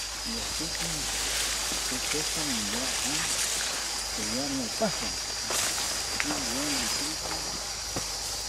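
Quiet voices talking intermittently a little way off, over a steady high-pitched insect buzz and hiss.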